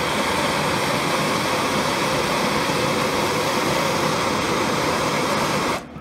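Handheld gas torch flame burning with a steady hiss on a steel plate, heating it to melt solder; it cuts off shortly before the end.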